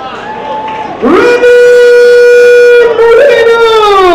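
Ring announcer drawing out a fighter's name over the PA in one long held, sung-out call, the note holding steady for about a second and a half and then sliding down in pitch near the end.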